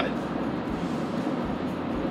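Steady road and wind noise inside the cabin of a Rivian R1T electric pickup cruising at highway speed: an even hiss with a low rumble underneath.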